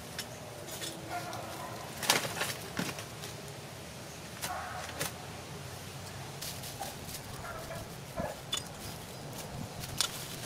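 Hands and a garden tool working in dry leaf litter and soil: scattered rustles and knocks, the loudest about two seconds in. A few short animal calls sound in the background.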